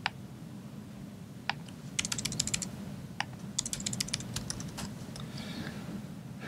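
Typing on a laptop keyboard: a few single key clicks, then two quick runs of keystrokes, about two seconds in and again near four seconds.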